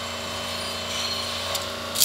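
Steady hum of factory machinery in a bearing plant, with a few short metallic clicks near the end.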